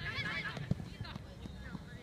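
Players shouting in high-pitched voices on an outdoor soccer pitch, strongest in the first half second. About two-thirds of a second in comes a single sharp thud of a ball being kicked.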